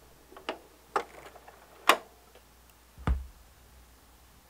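Stylus running in the lead-in groove of a vinyl LP before the music starts: a few sharp surface clicks and pops, about four loud ones, the last with a low thump, over a faint low hum.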